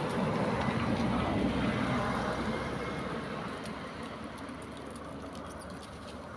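A vehicle passing on a nearby road, its noise swelling over the first two seconds and then fading away.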